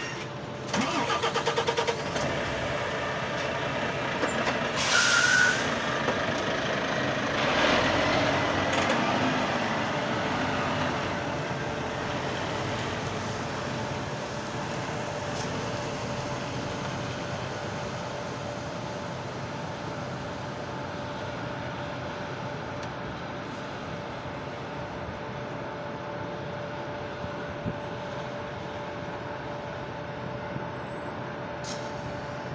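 Diesel engine of an articulated tanker lorry pulling away from close by. There is a short burst of hiss about five seconds in, the engine is loudest around eight seconds, then it fades into a steady low rumble as the lorry moves off.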